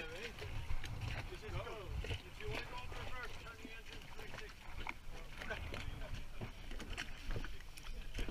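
Faint, indistinct voices of people talking, over a low rumble with a few light knocks.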